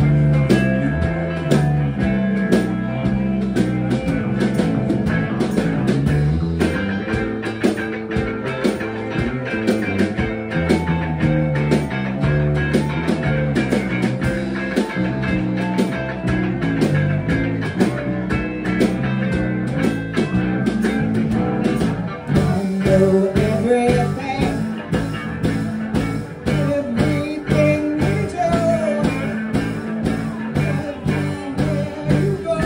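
Live rock band playing with a steady drum beat, bass and electric guitars. About two-thirds of the way through the beat drops out briefly, then picks up again.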